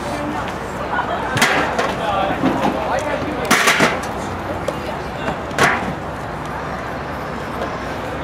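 Steady outdoor background noise with indistinct, far-off voices, broken by three brief louder bursts about a second and a half in, around three and a half seconds in, and near six seconds.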